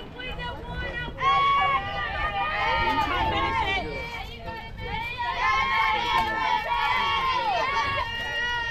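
Several high voices, likely the softball players, chanting a cheer in drawn-out, sing-song tones. It gets louder about a second in and carries on.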